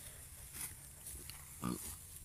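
Faint outdoor background with one short, low grunt-like voice sound about a second and a half in.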